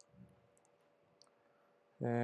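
Near silence with a few faint clicks from a computer's keys or mouse as text is selected in a code editor, and a soft low thump just after the first click.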